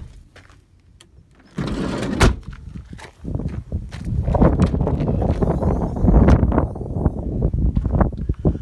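Van doors being worked: a latch clunk and knock about two seconds in, then a longer stretch of rumbling, knocking handling noise as the rear tailgate of the Peugeot Partner is opened.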